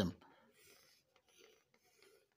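Faint scratching of a pen on paper: irregular writing strokes as a formula is finished and a box is drawn around it.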